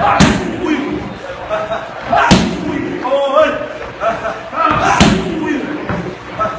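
Muay Thai strikes landing on held Thai kick pads: three loud smacks, two to three seconds apart.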